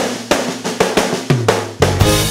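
Drum kit playing a quick fill of snare and drum strokes, about six a second, over a held low bass note. The full band comes back in near the end.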